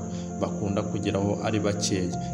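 Narration over background music, with a thin, steady high tone running underneath.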